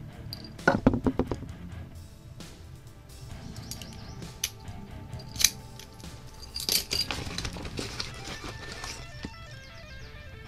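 Keys and brass lock cylinders clinking and clicking as they are handled, with a cluster of sharp clicks about a second in, one near the middle and another cluster around seven seconds in. Music plays faintly underneath.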